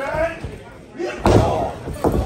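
A strike landing in a wrestling ring: one sharp, loud smack about a second in, with shouting voices at the start and around the hit.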